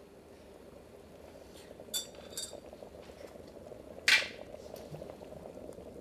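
Electric kettle heating water, a steady rumble building toward the boil, with a metal spoon clinking twice against a cup about two seconds in and a louder brief clatter about four seconds in.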